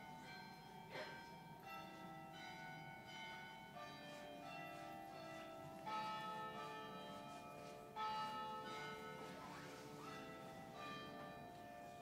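Church bells ringing faintly: a series of strikes on several pitches, each note ringing on after it is struck, with the loudest strikes about six and eight seconds in.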